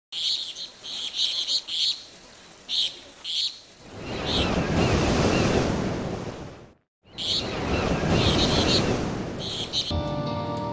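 Birds chirping in short repeated bursts over the rushing wash of ocean surf. The surf swells up about four seconds in. Everything cuts out for a moment near seven seconds, then birds and surf start again.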